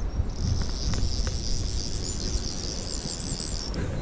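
Shallow river water flowing and rippling, under a high, steady buzz that starts just after the beginning and stops shortly before the end.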